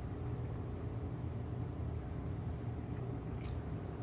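Steady low background hum of the room, with a single faint click about three and a half seconds in.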